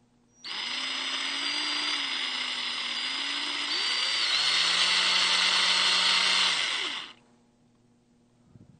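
Power drill running with a bare bit, a steady motor whine that starts about half a second in, gets louder and higher as the trigger is squeezed further partway through, then stops near the end.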